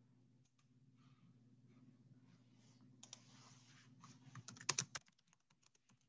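Faint computer-keyboard typing and clicking over a low steady hum, with a quick run of clicks about four and a half to five seconds in as the loudest part.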